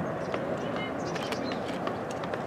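Steady rushing outdoor background noise with faint, indistinct voices and a few small clicks and short high chirps.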